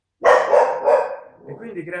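A dog barking, a quick run of loud barks starting about a quarter second in and louder than the man's voice.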